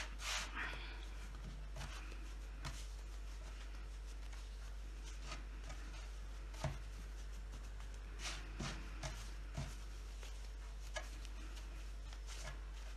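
Hands kneading soft marshmallow fondant with powdered sugar on a wooden board: faint, scattered rubs and soft pats, with a small cluster about two-thirds of the way through.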